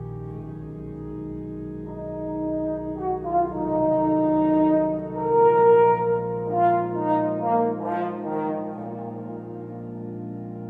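Pipe organ and a brass instrument playing a slow duet. The organ holds low chords underneath while the brass melody grows louder and moves more from about three seconds in, then settles back onto held notes near the end.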